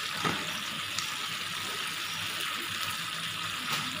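Raw mango slices sizzling in mustard oil and melting sugar in a kadhai: a steady frying hiss, with a faint tick or two in the first second.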